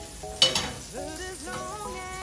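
Butter sizzling as it melts in a hot crepe pan, under background music with a steady melody. A single sharp knock sounds about half a second in.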